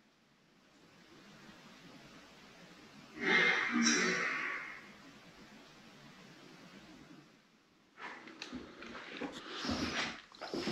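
A short shuffling noise about three seconds in, over a faint steady hiss, heard as a shuffle right behind the investigator and taken by him for an unexplained sound. Several sharper knocks and rustles of movement follow near the end.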